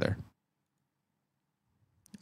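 A man's voice finishing a word, then near silence for the last one and a half seconds.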